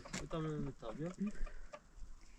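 Chicken clucking: two drawn-out calls in the first second and a half, then quieter.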